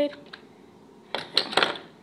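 Plastic Lego pieces clicking and clattering as the roof of a Lego ice cream truck is pulled off. There is a short rattle of sharp clicks about a second in.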